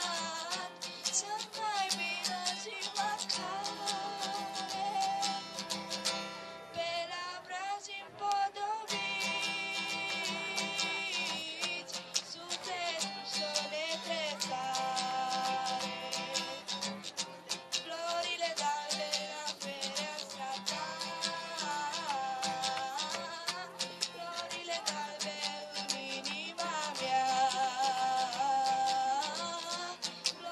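A children's choir singing a carol (colind), led by a girl's voice and accompanied by a strummed acoustic guitar.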